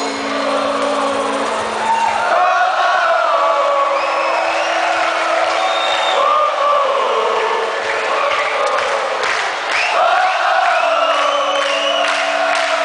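Large festival crowd singing along together with a live band, many voices on a rising and falling melody over held low notes from the band.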